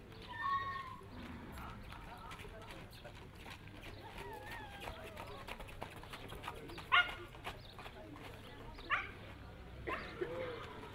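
Outdoor crowd murmur and faint hoofbeats of a filly led in hand on a paved yard. A short high-pitched call comes about half a second in, and two sharp, loud calls come about seven and nine seconds in.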